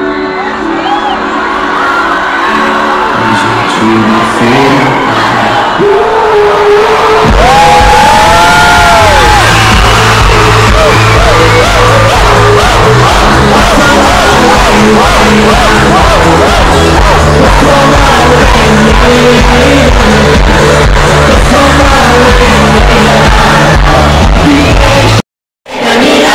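Live pop concert music heard loud through a phone's microphone in the crowd, with fans screaming and cheering over it. A heavy bass beat comes in about seven seconds in and carries on.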